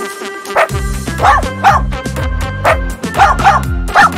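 A cartoon puppy's short, high yips, about seven of them, some in quick pairs, over cheerful children's background music with a bouncing bass line.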